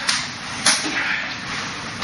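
Forearms and hands slapping against each other in fast Wing Chun gor sau exchanges: two sharp smacks, the louder one just under a second in.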